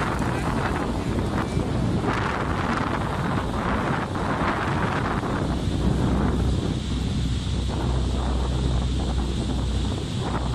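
Wind buffeting the microphone over the steady rush of churning water and falling water from Niagara's American Falls, heard from a moving boat. A deep rumble swells in the second half.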